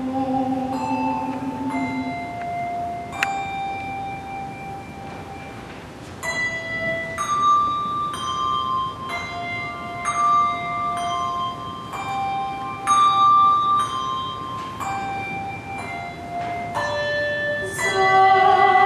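Handbells rung in a slow melody, single notes and occasional two-note chords, each note struck and left ringing for a second or two.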